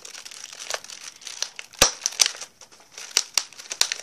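Crinkling and crackling of a chocolate advent calendar's cardboard door and foil-wrapped chocolate being pried out by hand, with several sharp cracks in the second half.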